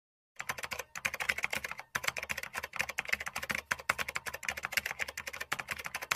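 Rapid keyboard typing clicks, a fast steady run of keystrokes with short pauses about one and two seconds in.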